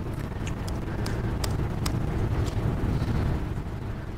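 Steady low room hum with several faint, sharp clicks scattered through it: laptop keys being pressed to run notebook cells.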